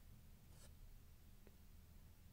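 Near silence: room tone with the faint handling of trading cards, two soft ticks as cards are slid across the stack in the hands.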